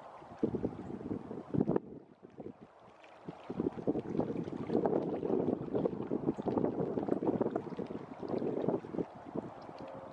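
Wind buffeting the microphone outdoors, an irregular rumbling crackle that drops back briefly about two seconds in, then builds into stronger gusts through the middle and eases near the end.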